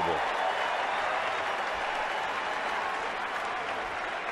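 Ballpark crowd cheering and applauding after a runner is thrown out stealing, the noise slowly dying down.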